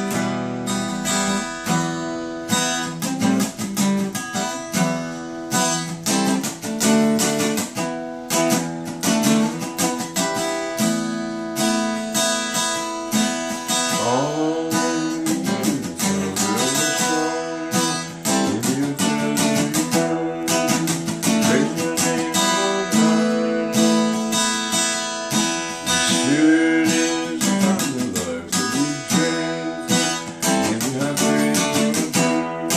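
Solo acoustic guitar instrumental: a steady stream of quickly picked notes and chords ringing together, with a few notes bending in pitch midway through.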